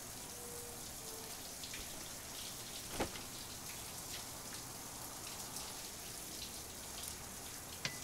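A shower running with a steady, even hiss of spraying water. One sharp knock comes about three seconds in, and a few small clicks come near the end.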